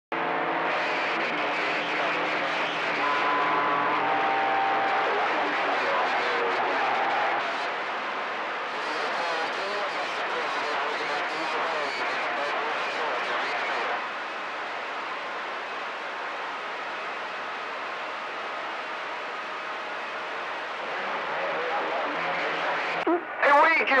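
CB radio receiver on channel 28 hissing with static and faint, garbled voices of distant stations coming in on skip, none of them clear. A few steady tones sound over the static in the first five seconds.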